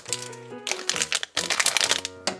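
A foil blind bag crinkling as it is handled, in bursts about halfway through and near the end, over steady background music.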